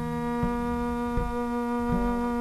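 Double bass played with a bow: a sustained low drone with many overtones, and a short knock that comes back about every three-quarters of a second.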